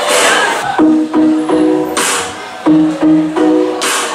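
Live band music starting up: from about a second in, a repeated figure of three short pitched notes comes round about every two seconds, with a bright hiss between the figures.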